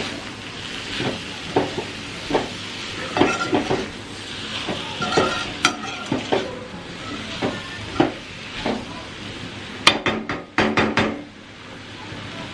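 Onions and capsicum sizzling in a metal kadai while a metal spatula stirs and scrapes them, clinking against the pan, with the stir-fry almost done. A quick run of sharper taps about ten seconds in.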